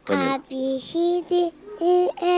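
A young girl singing unaccompanied into a microphone: a string of short, steady held notes with brief breaks between them.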